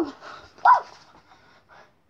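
Two short, high vocal calls: the first at the very start glides down in pitch, the second, just under a second in, rises and falls.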